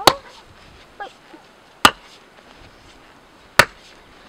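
Sledgehammer blows on a wooden post-and-rail frame: three heavy, sharp strikes, evenly spaced about a second and three-quarters apart.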